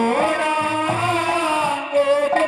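A woman singing a Haryanvi ragini through a stage PA, holding a long note that slides upward at the start and then bends and steps, with hand-drum strokes underneath.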